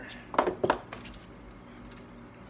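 Two quick metallic clinks, about a third of a second apart and a little under half a second in, as small carburettor parts are handled on a workbench.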